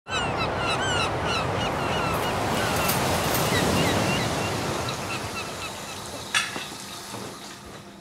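Surf breaking on a beach, a loud steady wash, with a flock of seabirds giving short repeated calls over it. The sea fades out after about five seconds, and a single sharp knock comes about a second later.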